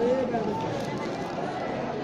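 Voices of a crowd of onlookers talking over one another.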